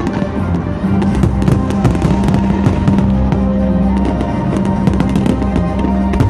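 Fireworks display: many shells bursting in quick succession, sharp bangs and crackling with no let-up, over steady music.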